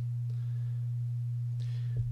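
A steady low electrical hum on the recording, one constant tone that runs unchanged under everything and is the loudest thing heard. Faint soft hiss comes in about half a second in and again near the end.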